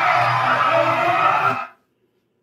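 Recorded club crowd cheering and yelling over music with a pulsing bass, cutting off suddenly about a second and a half in.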